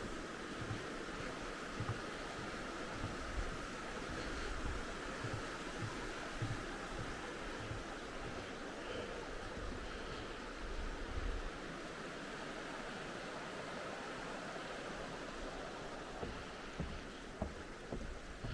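River water rushing steadily over stones, with regular soft low thumps of footsteps on a wooden footbridge.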